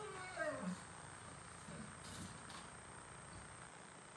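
An animal's short cry, falling steeply in pitch over the first half-second or so, then quiet room tone.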